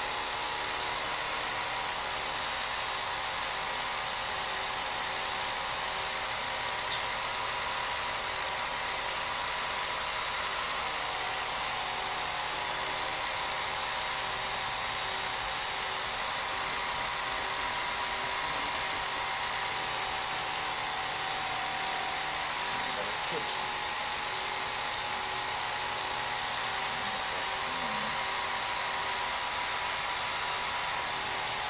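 Home-movie film projector running steadily, a continuous mechanical whir with a constant hum as the film feeds through.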